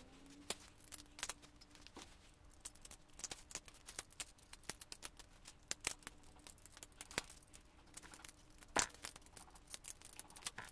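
Plastic Lego pieces clicking and rattling as they are handled and pressed together, a rapid irregular run of small sharp clicks, with a faint steady hum underneath.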